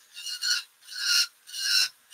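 A small hand chisel scraping a plastic scale figure's leg in three short strokes, each a squeaky rasp that swells and cuts off, with quiet gaps between, as moulded straps are shaved away.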